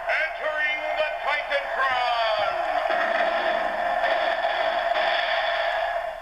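Tinny entrance audio from the WWF Titan Tron Live playset's small built-in speaker, triggered by a figure's barcode: a voice, then a steady stretch of music that stops right at the end.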